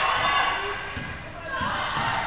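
A basketball being dribbled on a hardwood gym floor, a few low bounces ringing in the hall, with players' and spectators' voices echoing around it.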